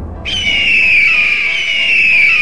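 A hawk's screech, a high falling cry heard twice in a row, starting a moment in over a quieter music bed.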